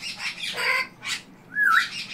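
African grey parrot making harsh squawking noises, with a short wavering whistle about one and a half seconds in.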